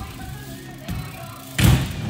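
A BMX bike strikes a wooden ledge box with one loud thud and a short ringing tail about a second and a half in, after a lighter knock. Background music plays throughout.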